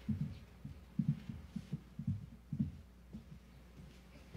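Irregular soft low thumps and bumps, several a second, fading out shortly before the end.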